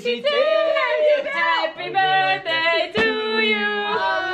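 Women's voices singing a few held, sustained notes, with more than one voice at once partway through. A sharp click cuts in about three seconds in.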